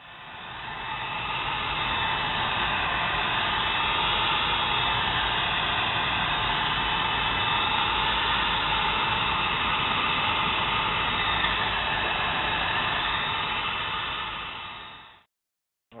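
Electric heat gun running: its fan builds up over the first couple of seconds after being switched on, then blows a steady rushing hiss of air, fading out about a second before the end.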